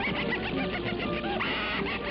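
Orchestral cartoon score with a run of short, chirping whistle-like pitch glides over held instrumental notes.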